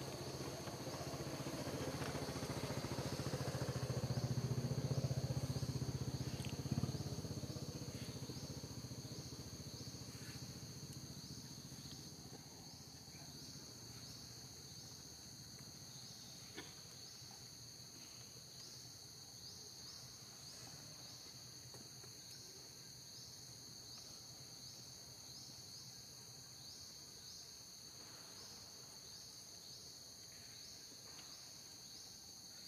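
Steady, high-pitched chorus of insects in two bands, with a faint regular pulse. A low rumble swells over the first few seconds, is loudest about five seconds in, then fades away.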